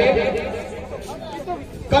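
Men's voices: the commentator's speech trails off about half a second in, leaving fainter background chatter from the crowd.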